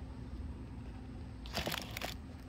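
Handling noise as a small plastic Midland emergency crank weather radio is set down and let go on a table: a brief cluster of clicks and rustles about a second and a half in, over a low steady background rumble.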